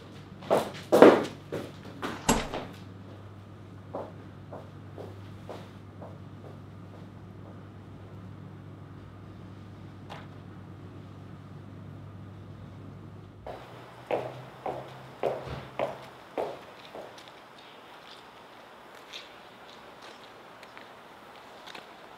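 A quick run of sharp knocks and clatters over a steady low hum, then scattered faint clicks. About two-thirds of the way through, the background changes abruptly and another short, irregular run of knocks follows.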